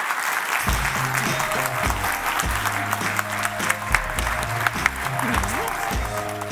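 Audience applauding, with instrumental music and a bass line coming in under the clapping about half a second in.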